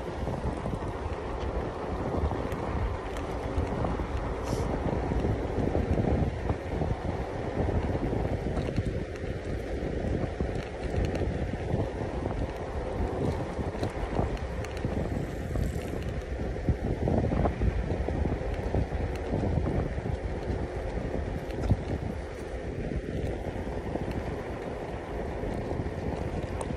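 Wind buffeting the microphone of a Zero 10 electric scooter ridden at speed, over the rumble of its tyres on tarmac. A faint steady whine runs underneath.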